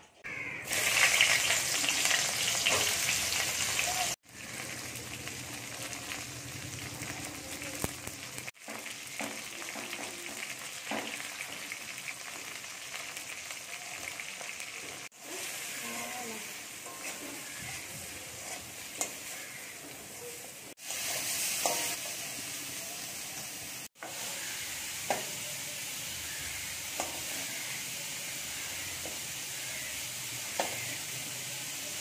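Pointed gourd (potol) slices sizzling as they fry in oil in a steel wok, turned with a metal spatula that clicks and scrapes against the pan. The sizzle is loudest in the first few seconds and again briefly a little past the middle, and it breaks off abruptly several times.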